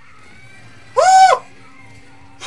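A man's single loud, high-pitched excited yelp, one rising and falling 'ooh' about a second in.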